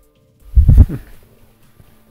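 Loud low rumble of handling noise from a phone camera being turned around, lasting about half a second from half a second in, over faint background music.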